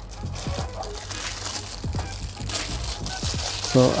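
Clear plastic wrapping crinkling as a watch sealed inside it is lifted from its box and turned in the hands.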